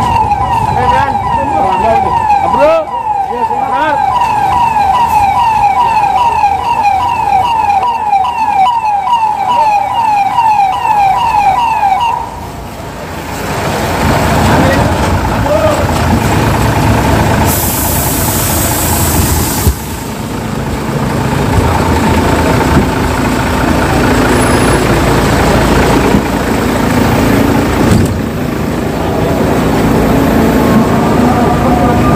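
Fire engine siren in a rapid yelp, its pitch sweeping over and over, which cuts off about twelve seconds in. The truck's engine and general commotion follow, with a loud hiss lasting about two seconds partway through.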